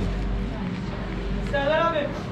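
Background chatter of diners in a busy café, with one short voice rising and falling near the end.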